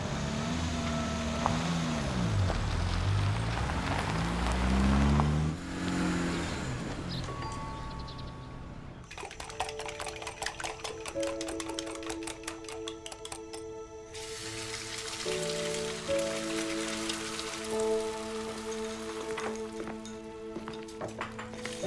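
A car engine runs and revs, its pitch falling and then rising over the first few seconds. Then soft music plays over rapid light tapping, as eggs are whisked in a bowl.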